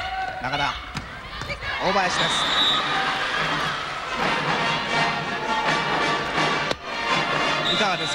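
A volleyball spiked hard onto a hardwood indoor court, followed by a loud, sustained wash of arena crowd noise.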